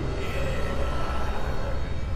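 Tense background music: a low, steady drone with faint held higher notes.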